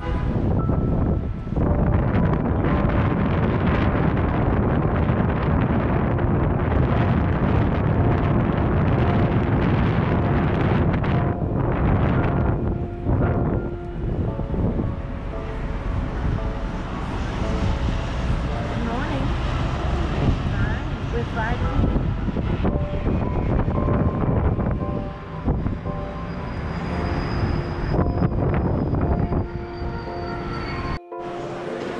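Wind rumbling on the microphone over the steady noise of city traffic far below, with a few held tones coming and going.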